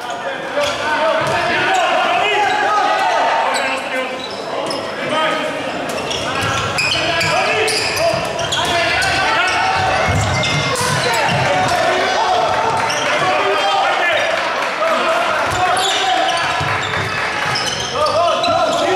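Handball game sounds in an echoing sports hall: players and spectators shouting, with the handball bouncing on the wooden court.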